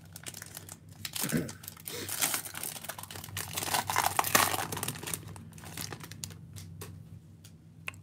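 Wrapper of a 2021 Topps Chrome baseball card pack crinkling and tearing as it is ripped open by hand, loudest from about a second in to halfway through, then lighter crinkling as the cards are drawn out.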